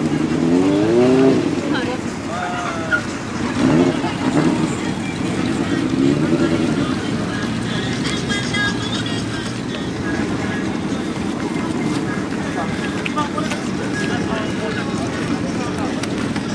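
Honda CBX400F air-cooled inline-four on an aftermarket exhaust, blipped several times in the first few seconds, the pitch rising and falling with each blip, then settling to a steady idle.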